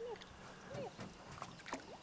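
Faint small splashes and water movement at the side of a canoe as a hooked smallmouth bass is played near the surface and a landing net is dipped into the river, with a few soft clicks and some faint short whistle-like glides.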